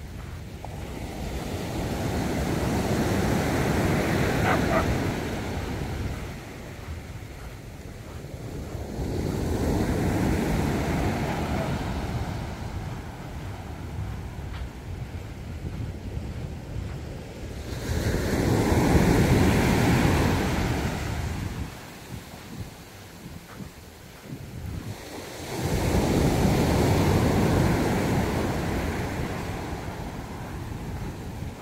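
Ocean surf breaking and washing up a sandy beach, four waves in turn, each swelling and fading over a few seconds about seven or eight seconds apart.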